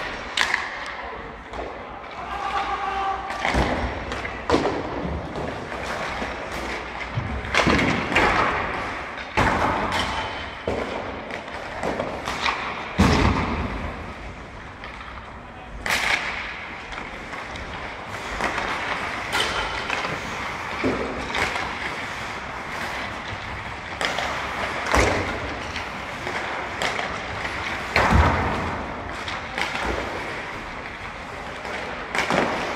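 Ice hockey practice in an indoor rink: sharp cracks and thuds of sticks and pucks hitting the ice and boards every one to three seconds, ringing in the hall, with players' voices in the background.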